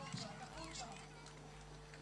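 Faint crowd voices and scattered small clicks over a steady low electrical hum. The voices fade out in the second half, leaving mostly the hum.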